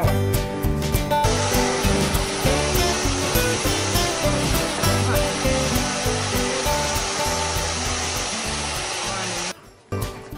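Hand-held hair dryer blowing steadily on a freshly bathed dog, starting about a second in and cutting off near the end, over background music with a beat.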